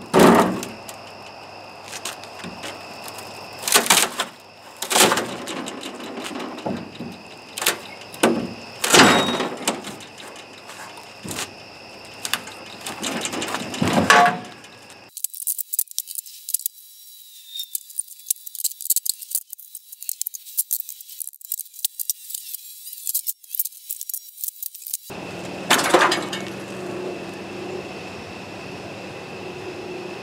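Sped-up sound of rotted plywood being pried off a steel trailer frame with a pry bar: a rapid run of cracks, knocks and scrapes of wood and metal. About fifteen seconds in, the knocking gives way to some ten seconds of only a high hiss, and then the knocks return.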